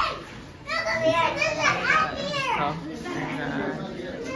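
Young children's high-pitched voices, talking and exclaiming excitedly, loudest from about one to three seconds in.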